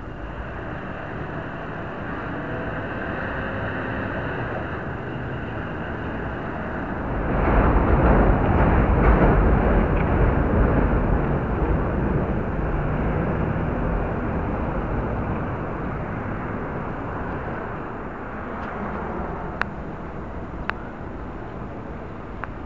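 City street traffic noise picked up by a tiny spy camera's built-in microphone. It swells louder from about seven seconds in and stays up for several seconds before easing off, with two sharp clicks near the end.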